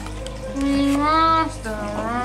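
A person's voice saying a drawn-out "mm-hmm", its pitch rising partway through, over a steady low hum.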